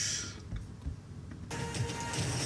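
Film trailer soundtrack playing faintly through speakers: a soft whoosh fading at the start, then a low rumble with a faint held tone building about one and a half seconds in.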